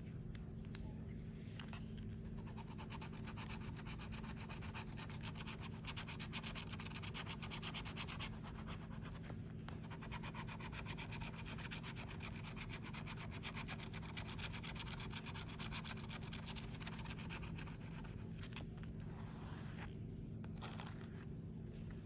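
Metal scratcher tool scraping the latex coating off a scratch-off lottery ticket in rapid short strokes, a faint continuous rasp that pauses briefly a couple of times.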